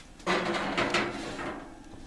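Clatter of a baking pan being handled in a kitchen: a quick run of knocks and scrapes starting just after the start, busiest for about a second, then thinning out.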